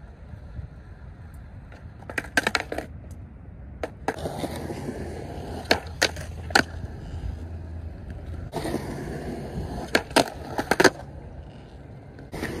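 Skateboard wheels rolling on concrete, with sharp clacks as the board is popped and knocks onto a concrete ledge. The rolling stops for a moment and then starts again, with another cluster of clacks near the end.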